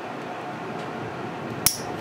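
A single sharp snip of a nail cutter closing through a toenail near the end, cutting it straight across, over a steady low hiss.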